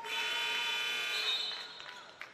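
Gymnasium scoreboard horn giving one loud, buzzing blast of about a second and a half.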